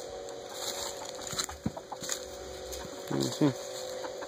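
Scattered light knocks and scrapes as the phone brushes a wooden post and chicken wire, with a short voiced call or grunt about three seconds in.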